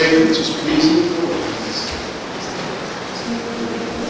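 A man's voice ends about a second in, giving way to a soft murmur of the congregation exchanging the greeting of peace. Near the end a single held sung note begins, the start of the chant.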